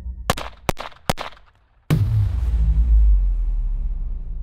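Four sharp handgun shots within about the first second, the last two close together. A brief hush follows, then a sudden deep boom about two seconds in whose low rumble slowly dies away.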